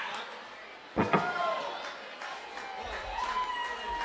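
Indistinct voices talking, with a sharp double knock about a second in.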